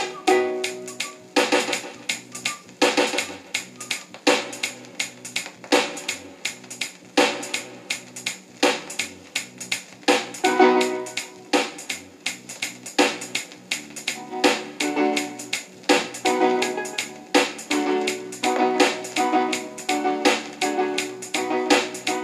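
A reggae dub version playing from a 45 rpm vinyl single on a console record player. Keyboard chords and drums go in a steady, even rhythm, with little deep bass.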